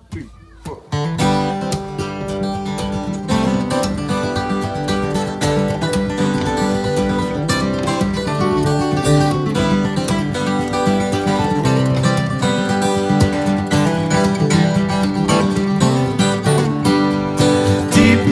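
Three acoustic guitars playing the instrumental intro of a country-blues song together, strumming and picking, starting about a second in after a count-in.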